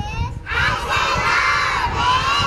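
A large group of schoolchildren chanting together in unison, loudly, with the right arm held out as for a school pledge. The chant breaks off briefly about half a second in, then the massed voices resume at full strength.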